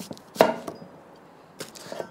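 Kitchen knife cutting a red onion on a wooden end-grain chopping board: one sharp knock of the blade on the board about half a second in, then a few lighter taps near the end.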